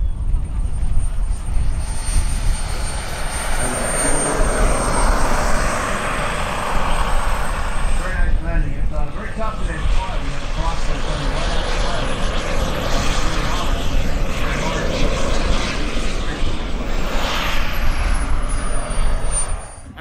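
The turbine engine of an RC scale Yak-130 jet whines while the model taxis on the runway, with wind rumbling on the microphone. About twelve seconds in, the whine climbs steeply as the turbine spools up, then falls back near the end. Voices are heard faintly about eight to ten seconds in.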